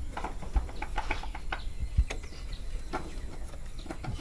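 Irregular light clicks and knocks of thin wooden beehive frame strips being handled and test-fitted together by hand.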